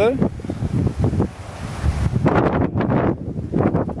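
Wind buffeting the camera microphone: a loud, gusty low rumble that dips briefly and then swells again.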